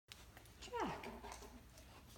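A Great Dane puppy gives one short whine that drops sharply in pitch, a little under a second in.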